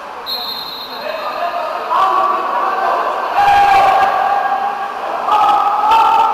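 A short, high whistle blast about a quarter second in, typical of a water polo referee's whistle, followed from about two seconds on by loud, drawn-out shouting voices across an indoor pool hall.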